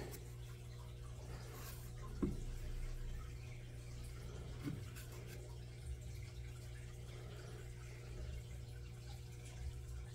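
Quiet room tone with a steady low hum, and a couple of soft clicks about two and five seconds in, as the opened clipper is handled.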